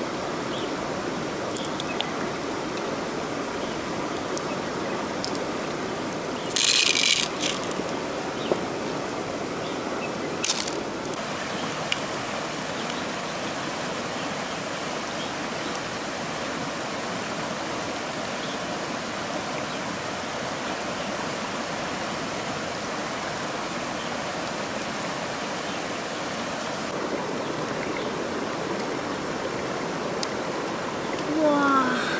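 Shallow river running steadily over rocks: a continuous rushing of water. A brief sharp scrape cuts in about seven seconds in, and a shorter click comes around ten seconds.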